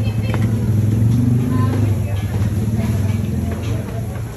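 A motor vehicle's engine running close by, with a low steady note that swells about a second in and then eases off, among people's voices.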